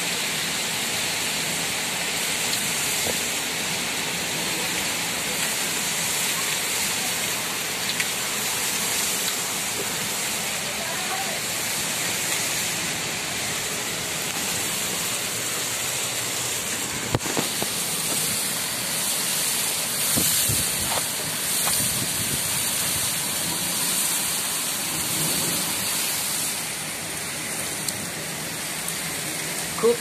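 Heavy rain pouring down hard and steadily, a dense even hiss of rain on roofs and surfaces. A few sharp knocks stand out about halfway through.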